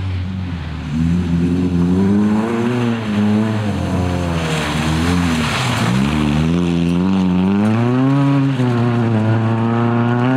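Nissan Sunny rally car's engine revving hard as it drives by on a loose mud-and-gravel stage. The pitch climbs and drops several times with gear changes and throttle lifts. A rush of tyre and gravel noise comes around the middle as it passes closest.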